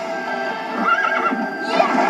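A horse whinnying about halfway through, over film score music, from a movie trailer soundtrack played through a television speaker.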